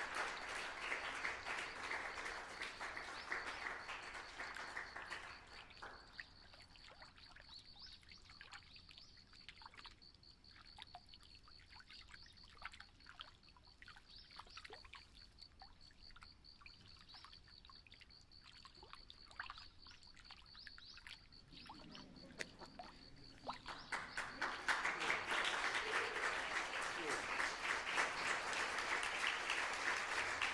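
Audience applause fading out over the first few seconds, then a quiet stretch of scattered claps under a faint, steady high tone, before the applause swells again about 24 seconds in.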